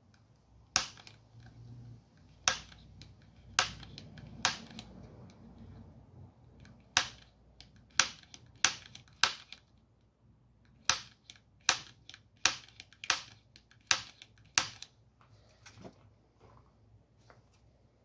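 About fifteen sharp metallic snaps of a spring-loaded punch fired against the steel pivot rivet of a vent window, in three bursts, trying to drive out the rivet whose end has been ground off.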